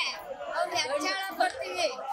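A woman speaking into a microphone, with other voices chattering around her.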